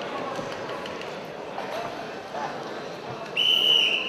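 Crowd murmur and faint voices in an arena, then a referee's whistle blown once near the end: a single high, steady blast just under a second long.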